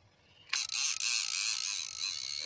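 Fishing reel being cranked to bring in a hooked fish, a steady mechanical whir that starts suddenly about half a second in.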